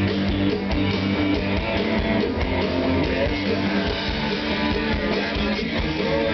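A live rock band playing at full volume, with electric guitar, drum kit and a bowed violin.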